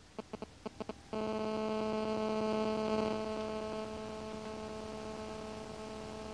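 Car DVD head unit's Bluetooth phone function: a quick run of short electronic beeps, then about a second in a steady, buzzy tone sets in as an outgoing call is placed. The tone drops a little in level about four seconds in and holds steady after.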